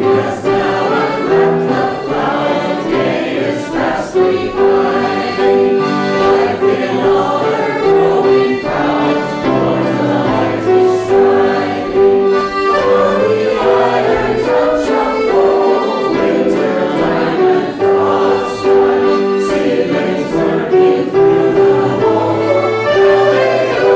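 Mixed choir of men's and women's voices singing together.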